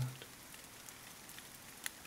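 Faint steady rain sound, an even hiss under a paused narration, with a single light click near the end.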